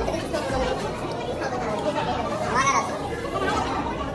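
Several people talking at once around a dining table: indistinct group chatter, with one voice briefly rising and falling in pitch about two and a half seconds in.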